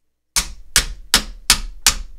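Five sharp knocks, evenly spaced about two and a half a second, starting about a third of a second in: a hand smacking a faulty camera in the hope of fixing its picture.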